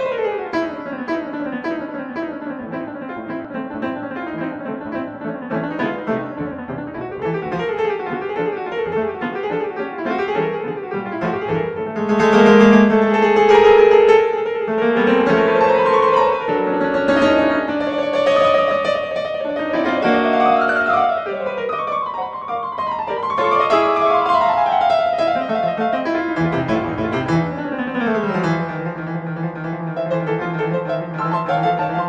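Background piano music with quick running scales and arpeggios, loudest a little before the middle.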